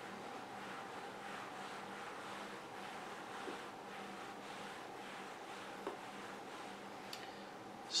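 Faint rustling of a hand brushing back and forth across shag carpet pile, over a faint steady hum.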